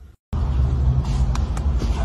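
A short dropout at a cut, then a loud, steady low rumble inside a car cabin, with a few faint clicks.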